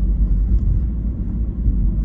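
Steady low rumble of engine and road noise heard inside a vehicle's cabin while driving at about 60 km/h.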